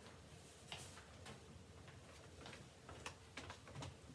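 Near silence: room tone with a faint steady hum and a few faint, scattered clicks and knocks.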